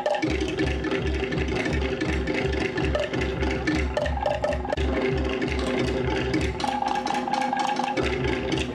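Polynesian drum ensemble: rapid clacking of wooden slit drums over a steady bass-drum pulse of about three beats a second. The bass drum drops out near the end while the slit drums play on.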